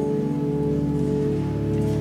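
Church pipe organ holding steady sustained chords, the notes shifting slowly.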